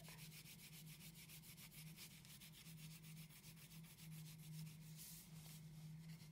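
Faint, fast back-and-forth scratching of a wax crayon coloured across paper, filling in a large area in quick, even strokes.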